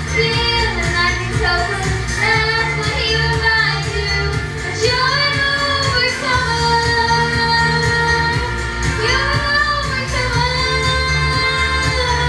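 A girl singing a pop ballad into a handheld microphone, her voice carrying the melody over backing music with a steady beat.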